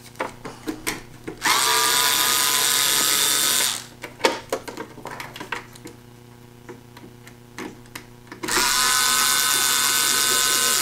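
Handheld power screwdriver with a Phillips bit backing out the screws of a projector's back cover. It runs twice for about two seconds each, once about a second and a half in and again near the end, its motor whine rising as it spins up. Small clicks of handling come between the runs.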